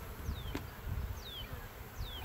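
Honey bees buzzing in a steady hum around an open hive, with three thin falling whistles, about one a second, over it.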